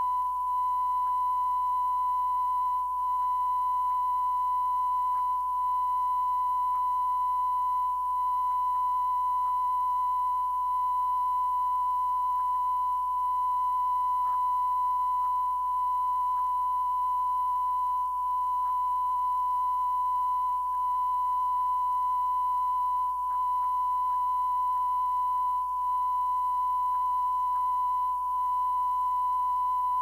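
Steady 1 kHz sine-wave test tone, unbroken, with brief slight dips in level every few seconds, over faint tape hiss, low hum and a few small clicks.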